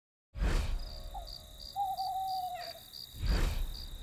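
Night ambience of crickets chirping in a steady pulse of about four chirps a second, with one long wavering hoot a little before the middle.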